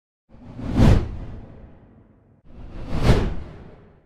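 Two whoosh transition sound effects, about two seconds apart, each swelling up to a peak and then trailing away.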